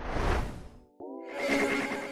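Logo-sting sound design: a noisy whoosh that fades out, a moment of silence about a second in, then a steady synthesized tone with a second whoosh swelling over it.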